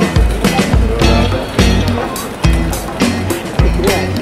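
Background music with a heavy bass beat and percussion.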